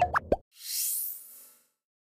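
Electronic sound-effect sting for an animated end card: a low thump with a few quick pitched bloops in the first half second, then a rising high shimmering swish that fades out.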